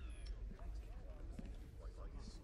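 Low steady rumble of sci-fi film control-room ambience, with a falling electronic tone at the very start and faint scattered clicks and blips.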